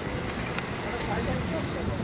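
A cricket bat striking the ball: one sharp crack about half a second in, over steady wind rumble on the microphone and distant players' voices.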